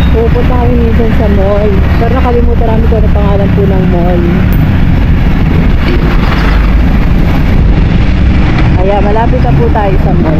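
Steady low rumble of a motorcycle riding in traffic, its engine mixed with wind on the microphone.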